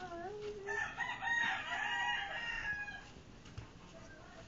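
A long pitched call lasting about two seconds, starting about a second in, with a shorter, lower call just before it at the very start.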